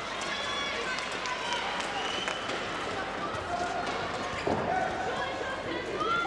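Handball court sound during play: players' voices calling out and a ball bouncing on the court, over a steady hall ambience.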